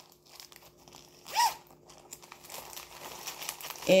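Plastic packaging crinkling and rustling as a zippered makeup pouch is handled and opened, getting busier toward the end, with one short high-pitched note about a second and a half in.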